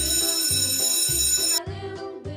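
Background music with a steady low beat, overlaid by a bright, high ringing tone that cuts off about one and a half seconds in.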